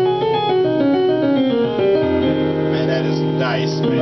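Gospel-style piano playing a quick line of notes that settles onto a held chord with a low bass note about two seconds in.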